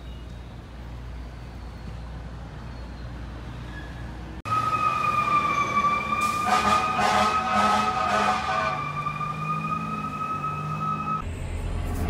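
Low street-traffic rumble, then, from a cut about four seconds in, a fire engine's siren holding a loud, steady high tone over the truck's engine, broken in the middle by a rapid run of louder blasts; the siren stops suddenly near the end.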